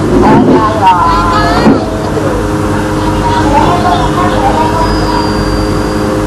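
Voices talking, with a steady droning hum underneath.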